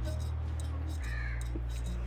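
Chicken strips and shredded cabbage frying in oil in a wok: a steady, quiet sizzle, with a short high call about halfway through.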